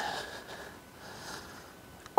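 A person's short breath or sniff close to the microphone in the first moments, then only faint, steady outdoor background.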